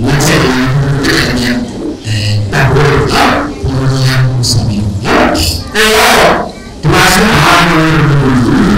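Only speech: a man talking steadily into a microphone, in phrases with short pauses.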